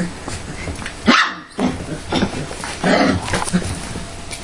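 Golden retriever puppies, about 25 days old, giving a series of short barks and yips.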